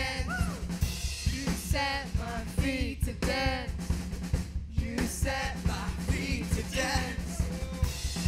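Live worship band playing a song: a drum kit keeps a steady beat under acoustic guitar, with voices singing over it.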